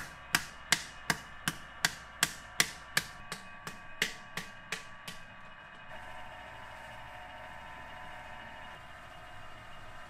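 Wooden paddle beating the wall of a large clay earthenware jar against an anvil held inside, regular dull strikes about three a second, growing softer and stopping about five seconds in; then a steady hum.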